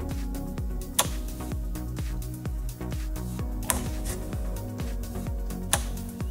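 Background music, with the sharp clicks of a small 12 V DC solenoid door latch. About a second in, the bolt snaps back out as the timed two-second unlock ends. Near the four-second mark it pulls in again, and it snaps out once more just before the end.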